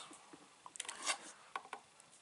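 Faint handling noise: a brief brushing rub about a second in and a few light clicks as a plastic USB charging hub and a phone charging cable are picked up and moved.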